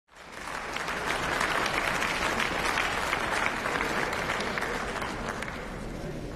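Sustained applause from a large seated audience of parliament members in a big assembly chamber, fading in over the first second and then holding steady.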